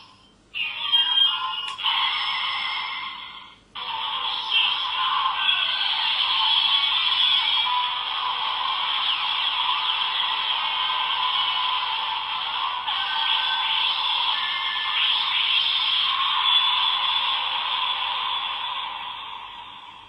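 Bandai DX Ultra Z Riser toy playing its electronic sound effects and music through its small built-in speaker, thin and tinny: two short bursts, then one long stretch of music that fades out near the end.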